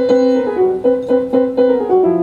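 Solo piano improvisation: a repeated note figure struck about four times a second.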